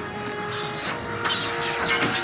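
Action-scene soundtrack: dramatic score music with held tones, then, a little over a second in, a sudden loud burst of whooshing with falling, whizzing high sounds as a cable net arrow's lines spread through the air.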